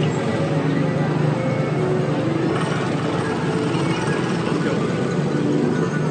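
Small gasoline engines of Tomorrowland Speedway ride cars running steadily on the track, mixed with background music from the park's loudspeakers.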